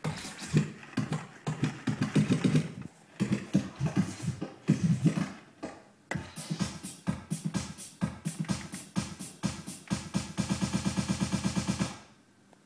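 Tech house track at 127 BPM playing from Traktor DJ software, with a beat that stops and starts a few times. Over the last two seconds it turns into a fast, even stuttering repeat of about ten hits a second.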